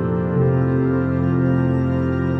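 Background music: sustained organ-like keyboard chords, changing chord about half a second in.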